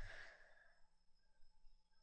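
Near silence: room tone, with a faint breath right at the start.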